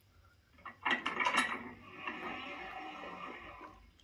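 Game sound effects played through a Google Home Mini's small speaker: a few clicks or knocks about a second in, then a steady hiss that fades out near the end.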